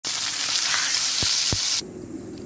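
Pork belly slabs sizzling loudly as they sear in a frying pan, with two dull knocks partway through. The sizzle cuts off suddenly just before the end.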